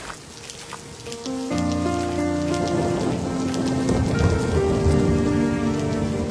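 Heavy rain pouring down. About a second and a half in, sustained music chords come in and build over it, louder than the rain.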